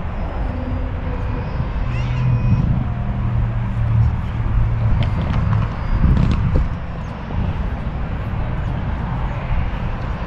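Outdoor ambience carried by a steady low rumble, with a deeper hum from about two to five seconds in.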